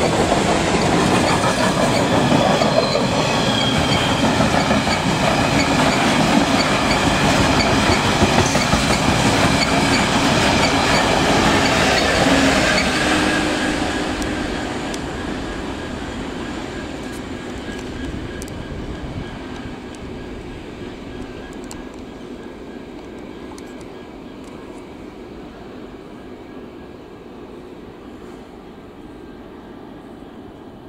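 A freight train headed and tailed by DB Class 66 diesel locomotives (two-stroke V12 engines) with a rake of open engineers' wagons, passing close and loud for about 13 s, then fading steadily as it runs away.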